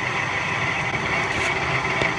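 Metal lathe running steadily while its cutting tool works the end of a short metal bar held in a four-jaw chuck, a continuous machine hum with a high whine above it.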